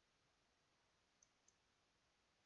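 Near silence with two faint mouse-button clicks a quarter of a second apart, about a second in.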